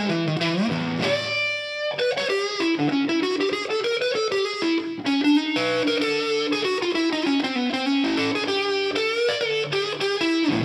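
Electric guitar played through the Origin Effects RevivalTREM pedal in overdrive, its gain turned up toward a cranked early-60s brown Fender Deluxe tone: a single-note lead line with a long held note about a second in.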